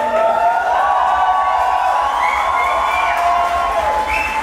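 Several voices holding long, sliding high notes together, like a drawn-out group howl or sung chord, with the pitches overlapping and gliding up and down.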